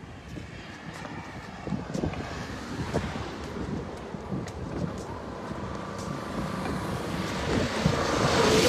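Wind rumbling on a phone's microphone beside a road, with faint voices in the first couple of seconds; the rumble grows louder near the end.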